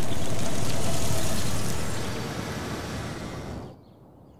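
A Lexus SUV driving by, a steady rush of tyre and engine noise. It fades over the last two seconds and cuts off abruptly just before the end.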